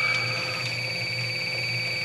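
Electronic refrigerant leak detector alarming with a steady, high-pitched, rapidly pulsing tone as it reads high ppm at a walk-in freezer's evaporator coil, the sign of a large refrigerant leak. A low hum runs underneath.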